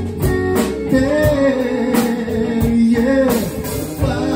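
Live band playing: electric guitars, electric bass and a drum kit, with a steady drumbeat under a melody line that bends in pitch.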